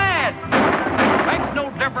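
Two gunshots about half a second apart, fired in time with a comic western song, with a man's singing voice just before and after them.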